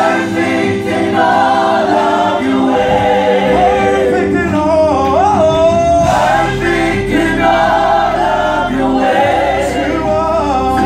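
Gospel worship song: a small group of male and female singers sings together into microphones, with voices sliding and holding notes over steady held accompanying chords.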